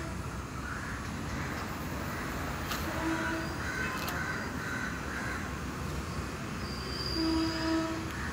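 Vehicle horn sounding in short, steady-pitched blasts: a brief, fainter one about three seconds in and a louder one near the end. A constant hum of traffic runs underneath.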